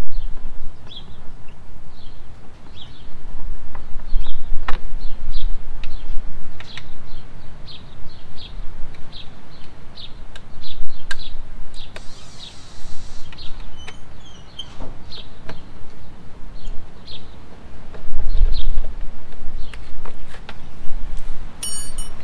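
Small birds chirping over and over in short high notes, over a gusting low rumble of wind on the microphone. A few light metallic clicks come from the hand tool at work on the motorcycle's bolts.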